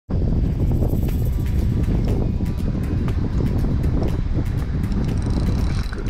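Wind buffeting the camera microphone over open water, a steady heavy rumble, with background music and a run of short ticks above it.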